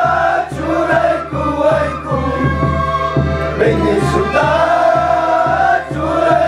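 A mixed group of men and women singing a Quechua song together in unison, in long held phrases with short breaks between them.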